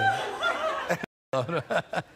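Laughter: a person chuckling just after a joke's punchline. It cuts off abruptly about a second in, followed by brief voice sounds.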